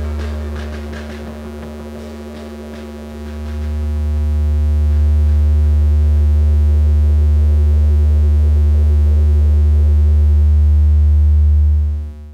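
Loud, steady electric hum with a stack of overtones, like mains hum from an amplifier, closing out an experimental rock track. It sags for the first few seconds, with faint ticks over it, then swells back, holds, and stops abruptly at the end.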